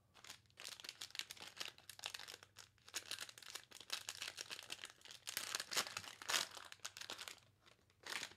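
Wrapper of a Donruss Optic football card pack being torn open and crinkled by hand: a dense run of crackles, loudest about three quarters of the way through, dying away near the end.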